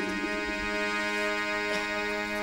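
Harmonium holding one steady chord on its own, with no singing or drumming.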